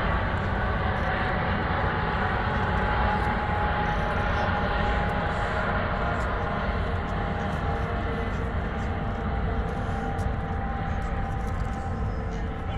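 Two Coast Guard helicopters flying past in a pair, a steady rotor-and-turbine drone with faint whining tones held throughout.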